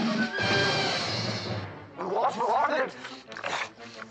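Cartoon soundtrack: orchestral music with a dense noisy rush over the first second and a half, then a cartoon character's wordless, quickly wavering cries.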